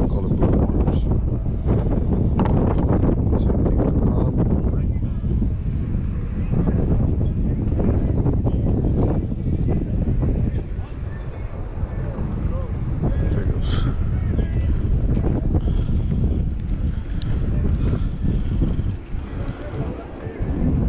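Wind buffeting the camera microphone: a loud low rumble that eases a little past the middle.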